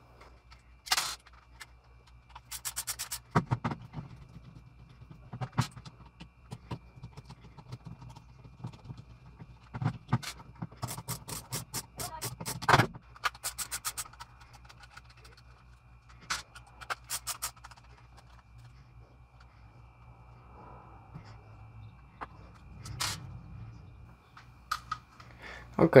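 Hand screwdriver backing Torx screws out of plastic Ridgid 18V tool battery cases, with scattered clicks and several runs of quick clicking as screws turn and are handled and the packs are moved on the wooden bench.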